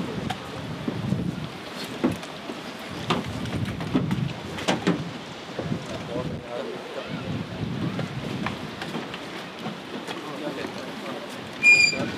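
Wind buffeting the microphone as a low, uneven rumble, with scattered sharp clicks and knocks of boots and gear on a ship's steel deck. A short, high, steady whistle-like tone sounds near the end.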